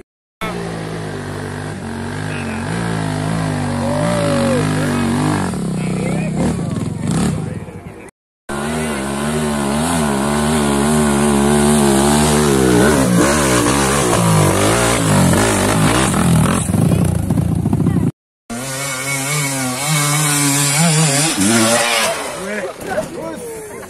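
Trail motorcycle engines revving hard on a steep dirt hill climb, their pitch rising and falling, with crowd voices mixed in. The sound breaks off briefly twice, about 8 and 18 seconds in.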